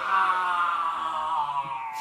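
A man's voice holding one long, unbroken drawn-out vowel or hum that slowly falls in pitch.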